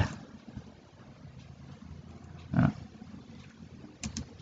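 Faint low hum and hiss of a quiet room through the microphone, with a short hesitant spoken "uh" about two and a half seconds in.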